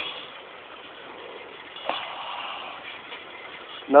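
Faint whir of a motorized cruiser bicycle rolling with its engine shut off and its chains still connected, the drivetrain turning freely with little drag. A single click about two seconds in.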